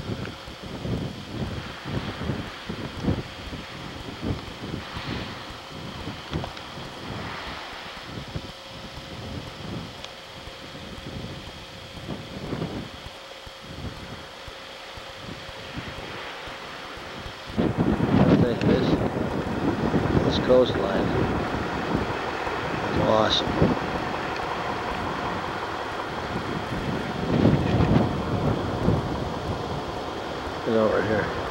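Wind buffeting a camcorder microphone in gusts. About 17 seconds in the sound jumps abruptly louder, and voices come in under the wind noise.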